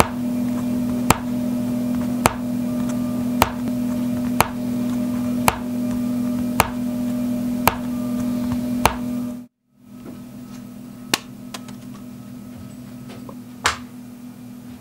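A steady low hum with a sharp tick about once a second, evenly spaced. About two-thirds of the way through it cuts off abruptly, and a quieter hum follows with two single clicks, the louder one near the end.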